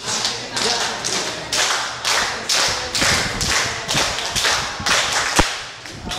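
A group clapping and stamping together in a rhythm of about two beats a second, with one sharp, louder crack near the end.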